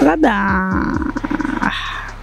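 A drawn-out wordless vocal sound. The pitch swoops up and back down, holds steady for a moment, then turns buzzy and rattling for about a second before stopping near the end.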